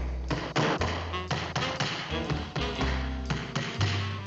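Cartoon hammer tapping nails into a wooden board, a quick, even run of about four taps a second, over jazzy background music.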